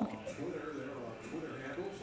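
Soft speech: a spoken "okay" at the start, then quiet, wavering voices.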